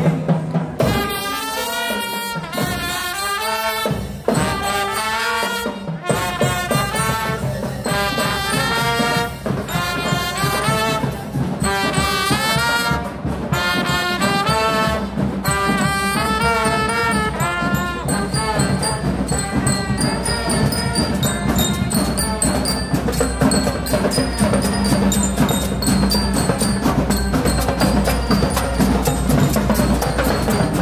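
Marching band playing: trumpets and trombones carry the melody, with the drums joining in strongly about six seconds in.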